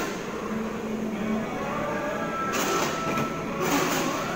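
Steady rumbling background hum of an indoor play hall, with two short swishes near the end as a toddler slides down a plastic slide.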